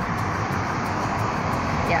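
Steady background noise with no distinct sounds standing out, such as the general noise of the outdoors or distant traffic picked up by the microphone.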